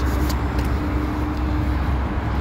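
Road traffic noise: a steady low rumble, with a vehicle's hum that fades out shortly before the end.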